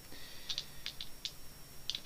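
Dry rice grains sprinkled from the fingers onto wet watercolour paper: about half a dozen faint, light ticks, irregularly spaced.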